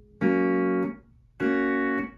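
Pedal steel guitar: a major chord is picked and rings for well under a second, then is cut off cleanly by pick blocking. About half a second later the next chord, one fret higher, is picked and blocked the same way. No bar slide is heard between them.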